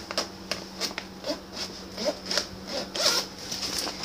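Backpack zipper being pulled open in a run of short, uneven rasps, with rustling from handling the bag.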